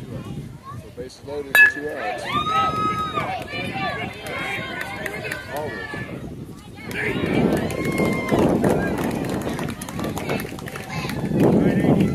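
A single sharp crack of a bat hitting a baseball about a second and a half in, followed by people shouting and calling out, some with high, rising voices.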